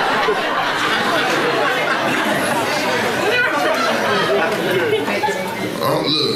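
Indistinct overlapping voices, a crowd chattering, with no single clear speaker.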